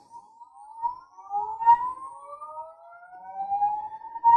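Anycubic Wash and Cure station starting its wash cycle: the motor spins up the magnet-driven blade in the cleaning fluid, making a whine that rises slowly and steadily in pitch.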